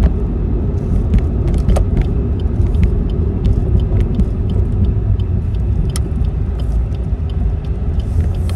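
Car cabin noise while driving: a steady low rumble of engine and road, with scattered light clicks and ticks throughout.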